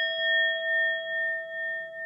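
A single struck bell chime rings on and slowly fades, its tone pulsing in loudness about twice a second. It is the notification-bell sound effect of a subscribe end screen.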